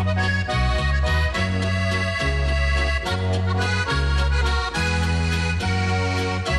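Instrumental passage of Slovenian Alpine-style folk music led by accordion, with held chords over a bass line whose notes change about once a second.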